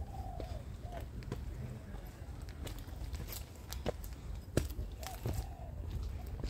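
A dove cooing in short arched phrases, heard near the start and again about five seconds in. A few sharp clicks or knocks fall in between, the loudest about four and a half seconds in.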